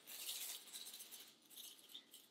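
Brief, faint rattle of everything bagel seasoning granules shaken in a shaker jar over a plate of food.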